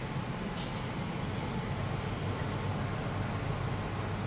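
Steady low rumbling background noise of a shop interior, with a faint brief hiss about half a second in.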